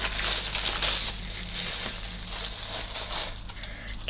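A chunky linked gold chain necklace clinking and rattling as it is handled, a run of small metallic clinks.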